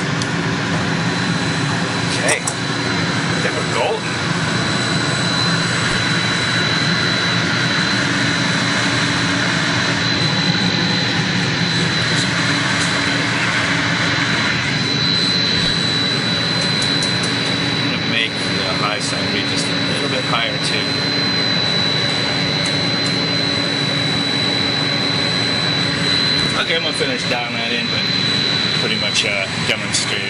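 Steady running drone of a VFD-driven water booster pump motor, with a constant high-pitched whine over a low hum.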